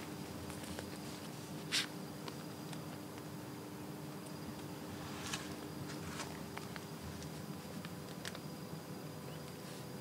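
Faint rustling and light clicks of a sandal's ankle strap and buckle being fastened by hand, over a low steady hum. The loudest is a short rustle just under two seconds in.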